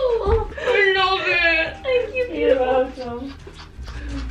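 A young woman's high-pitched, wordless whimpering, wavering and sliding in pitch, with a dull thump just after it begins.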